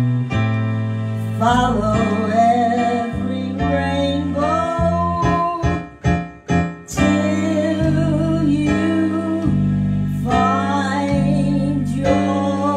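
A woman singing with vibrato into a handheld microphone, accompanied by a digital piano playing sustained chords and bass notes. The voice comes in about a second and a half in, and the music briefly thins to a few short, detached chords near the middle before the voice returns.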